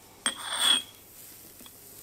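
A single hammer blow on a tool held against hot steel on the anvil, about a quarter second in, followed by a brief high metallic ring.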